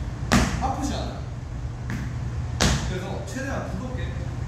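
Two sharp impacts about two seconds apart, over a steady low hum.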